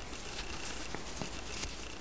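Faint handling noise: fingers rustling a small action figure's stitched cloth trench coat as it is lifted, with a few small clicks.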